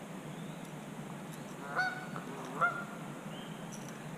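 Two short honking bird calls, a little under a second apart, over a steady background hiss.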